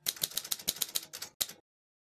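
Typewriter keys striking paper in a quick run of about a dozen clacks, typing out a short heading. The run stops abruptly after about a second and a half.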